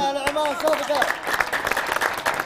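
Audience applauding, the clapping building up after about a second; a voice calls out briefly at the start.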